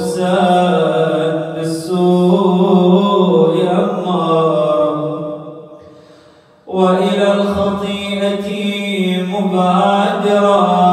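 A man's solo voice chanting an Arabic supplication in a slow, drawn-out melodic style, each syllable held as a long sustained note. About six seconds in, the voice fades away, then comes back in after a short breath.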